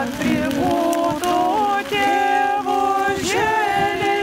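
Unaccompanied voices singing a ritual chant, with long held notes that slide up or down into the next pitch.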